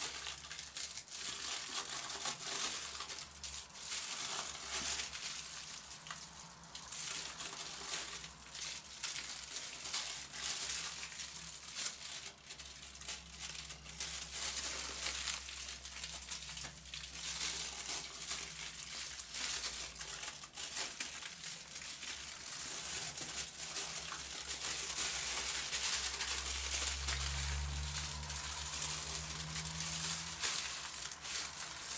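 Aluminium foil crinkling and rustling without a break as hands roll a soft omelette roll up inside it, a little louder in the second half.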